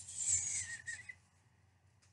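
Folded cotton quilting fabric rustling as it is unfolded and handled, a short hissy rustle about a second long.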